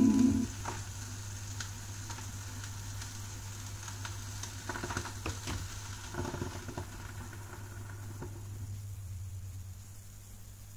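The last note of the song stops about half a second in. What remains is the surface noise of a 45 rpm vinyl single playing on: crackle and scattered clicks over a faint hiss and a low steady hum.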